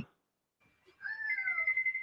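A cat meowing once, a single call about a second long that falls in pitch, starting about a second in and picked up faintly by a call participant's microphone.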